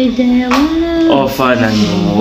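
A voice singing long held notes that step up in pitch. About a second in, a lower, deeper voice joins and the two overlap.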